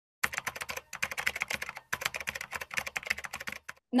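Fast runs of sharp clicks, like keys being typed, in three bursts broken by short pauses about one and two seconds in.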